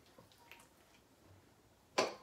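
Quiet rustling of hair being handled, then one sharp click at the very end as a plastic hair clip snaps.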